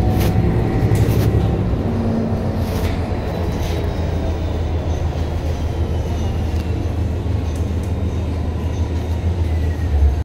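Inside a moving city bus: steady low rumble of the engine and tyres on the road, with a few short rattles from the body and fittings in the first few seconds and a faint high whine that slowly falls in pitch midway.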